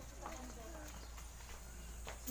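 Faint background voices with a few light footsteps or taps on a hard floor.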